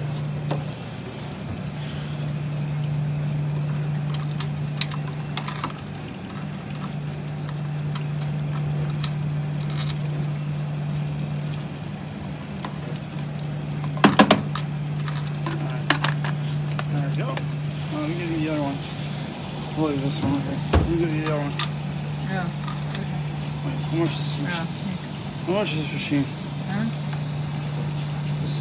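Steady low electrical hum, with sharp plastic clicks and knocks as a front-loading washer's detergent dispenser drawer and a bottle cap are handled; the loudest click comes about halfway through.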